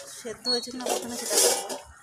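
A spoon clinking and scraping against a bowl, with a short ringing clink about half a second in.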